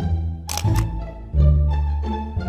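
Playful background music of low plucked and bowed string notes, with a camera shutter click sounding twice in quick succession about half a second in.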